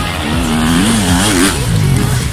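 Enduro dirt bike engine revving, its pitch rising and falling several times as the rider works the throttle passing close by.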